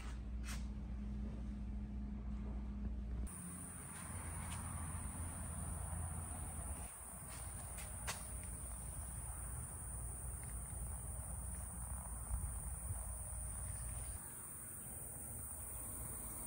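Quiet background: a steady low hum for the first few seconds, then a faint steady high-pitched whine over low noise, with a few light clicks.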